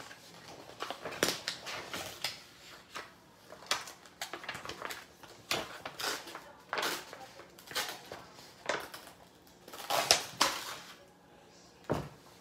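Coloring-book paper being handled and moved by hand, rustling and crinkling in short irregular bursts, loudest about ten seconds in.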